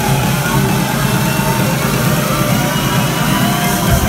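Electronic dance music played loud over a club sound system, with the deep bass cut out, until the bass and kick come crashing back in right at the end.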